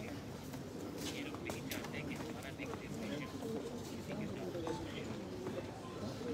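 Indistinct murmur of several people's voices in a large chamber, with a few light clicks.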